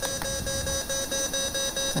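Patient monitor's heart-rate beep repeating rapidly and evenly, about four to five short beeps a second, tracking a heart rate of 276 in supraventricular tachycardia that adenosine has not reverted.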